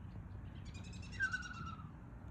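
A single animal call about half a second in, lasting about a second, buzzy and falling in pitch, over a steady low rumble.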